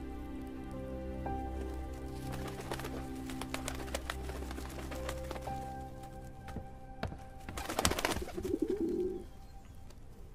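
Soft background music with sustained notes. About eight seconds in, a white carrier pigeon flaps its wings and gives a short coo as it arrives with a message.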